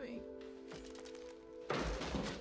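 A wooden table is kicked over, giving a loud heavy thud near the end, over soft, sustained orchestral film music.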